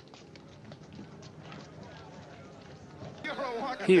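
Faint, rapid footsteps of people running, from an old black-and-white film soundtrack. A man's narrating voice begins near the end.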